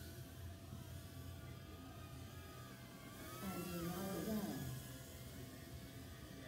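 Faint steady background with a brief muffled voice, the loudest sound, from about three and a half to nearly five seconds in.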